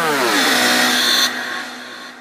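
A buzzy tone glides steeply down in pitch for about a second, then settles into a steady low hum with hiss that fades away. It plays as a transition effect between pieces of background music.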